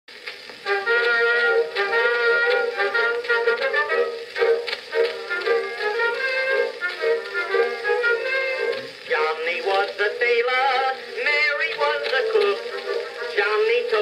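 Edison Blue Amberol cylinder record playing on an Edison cylinder phonograph: the band's instrumental introduction to a popular song, starting just under a second in.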